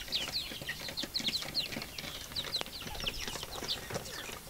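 Native chicken chicks peeping: many short, high, falling notes, several a second and overlapping.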